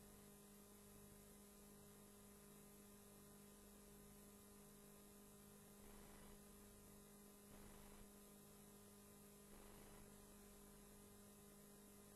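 Near silence with a faint, steady electrical hum on the audio feed and a few very faint brief rustles.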